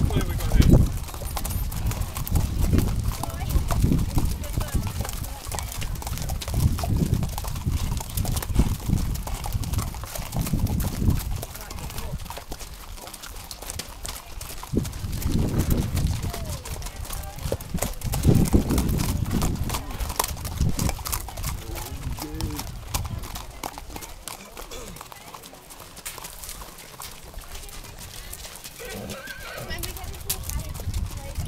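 Horses' hooves clip-clopping on a dirt track as several ridden horses walk past, with a horse whinnying and people's voices among them.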